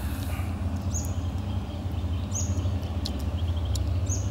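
A small bird chirping a few times, short high notes that fall in pitch, over a steady low outdoor rumble, with faint small clicks of handling.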